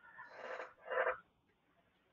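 A man's soft breathing close to the microphone: a faint breath, then a second short breathy sound about a second in.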